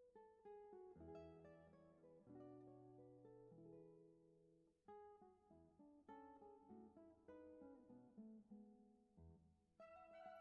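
Faint background music: an acoustic guitar picking notes and chords, each note starting sharply and fading away.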